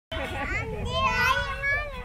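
A young child's high-pitched voice calling out in long, gliding sounds while riding a swing.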